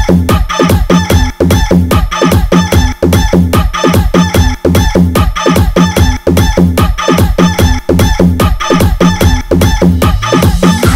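DJ remix dance track: a fast, steady electronic beat with deep bass, overlaid with sampled rooster clucking and crowing ("ku ku ku") repeated in time with the beat.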